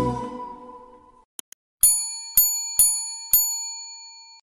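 Background music fading out over about the first second. Then come two faint clicks and four bright bell dings, the last one ringing on. These are the click and notification-bell sound effects of a subscribe-button animation.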